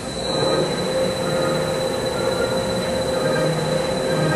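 Dynamic-series oil country lathe spindle and geared headstock spinning up after being switched on, then running steadily. It is a noisy machine hum carrying one steady tone, and it grows louder over the first second.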